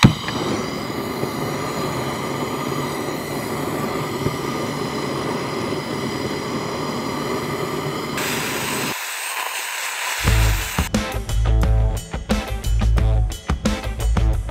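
GrillBlazer grill torch lighting with a sudden burst, then running with a steady rushing noise and a faint whistle for about nine seconds as it sears a steak. Music with a strong beat comes in near the end.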